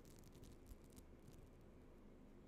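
Faint, scattered crackling of Playfoam, tiny glued foam beads, as it is squeezed and pulled apart between the fingers close to the microphone.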